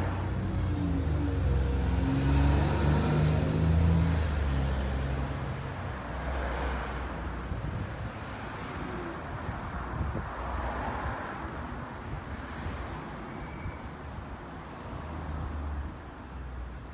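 Motor vehicle traffic: an engine drone whose pitch rises and falls over the first few seconds, then a steadier hiss of road traffic that swells twice.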